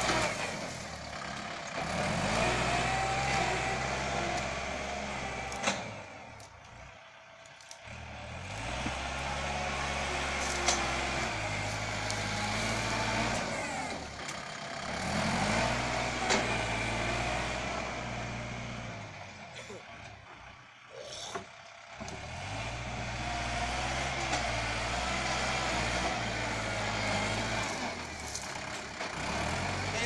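Kubota L5018 compact tractor's diesel engine running under load as it pushes and grades soil with a front blade, its pitch stepping up and down as the load changes. The sound dips twice, about six seconds in and again about twenty seconds in.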